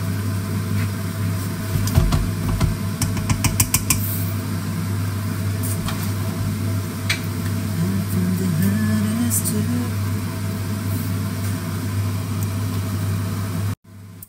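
Minced pork and vegetables frying in a stainless steel pan, with a steady low hum throughout. A quick run of clicks from the spoon against the pan comes about three seconds in.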